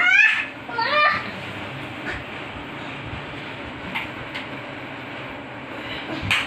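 A young child's voice: two short cries that rise in pitch in the first second, then a steady background hiss with a few faint clicks.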